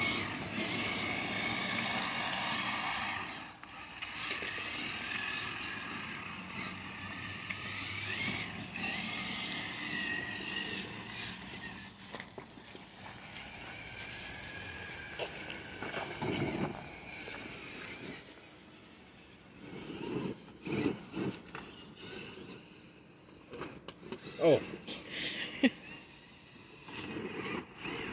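Electric RC rock crawlers' motors and gear drivetrains whining, the pitch rising and falling with the throttle for the first ten seconds or so. Later come scattered knocks and scrapes as the trucks crawl over the dirt.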